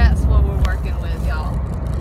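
Steady low rumble of road and engine noise inside a moving car's cabin, with bits of talk over it.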